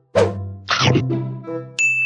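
Sound-effect notes dubbed over the scene: two short struck, pitched hits, then a bright ding near the end that rings on as a steady high tone.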